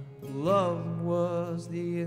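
A man singing live over his own acoustic guitar: a sung note swoops up about half a second in, then settles into held notes over the guitar.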